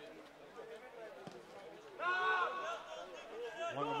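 A single loud, high-pitched shout from a voice on the football pitch, about two seconds in, lasting about half a second, over faint open-air field ambience.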